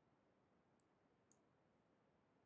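Near silence: faint room tone, with two faint high clicks about half a second apart.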